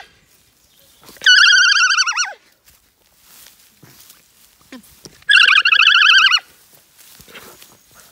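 Alpaca humming: two high, wavering hums, each about a second long, one just over a second in and one about five seconds in.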